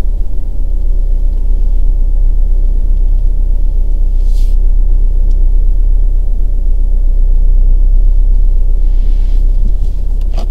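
Steady low rumble of a car heard from inside its cabin, with a brief hiss about four seconds in.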